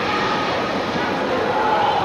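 Indistinct chatter and calls of many children, echoing in an indoor ice rink over a steady background noise.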